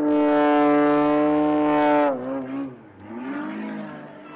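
Extra 330 aerobatic plane's engine and propeller at high power, a loud steady drone that drops sharply in pitch about two seconds in, then rises again briefly and fades.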